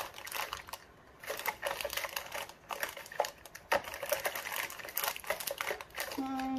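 Small plastic alcohol ink dropper bottles clicking and rattling against each other as a gloved hand rummages through a box of them, in quick irregular taps.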